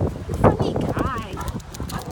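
A Great Dane's footfalls as it runs up close, a patter of short thuds and clicks. About a second in there is a brief wavering high-pitched sound.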